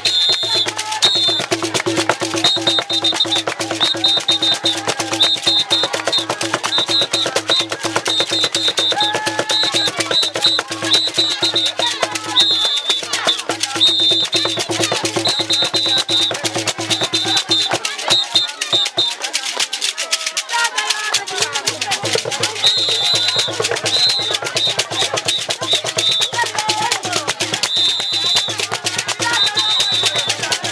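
Live dance percussion: wooden disc rattles shaken in a fast, steady rhythm together with a small hand drum. Voices sing and call over it, and a high whistle sounds in short, repeated notes.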